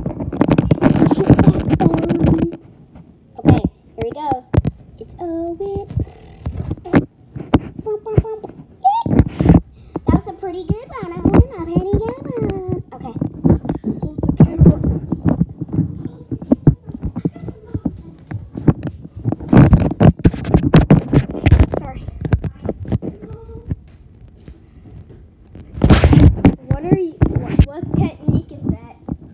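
Children's voices talking and calling out, mixed with many sharp thuds and knocks. Loud, rough stretches of noise come at the start, around twenty seconds in and near the end.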